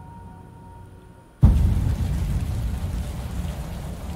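Film soundtrack: a low, fading drone, then about a second and a half in, steady rain with a deep rumble underneath cuts in suddenly.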